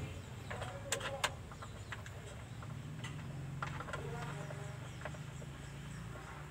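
Faint clicks and light metal knocks from hands working around the exposed timing belt and cam pulley of a Mitsubishi L300 engine, over a low steady hum. The clearest clicks come about a second in.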